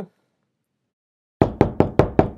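Silence, then about a second and a half in a rapid knocking on a door starts, about five knocks a second.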